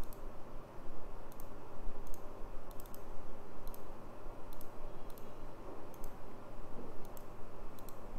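Computer mouse button clicking about ten times at an irregular pace, each click a quick double tick of press and release, over a steady low background hum and hiss.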